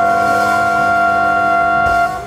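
Jazz septet's closing chord: trumpet, trombone, alto and baritone saxophones hold a loud, steady chord over the rhythm section, and the whole band cuts it off together right at the end.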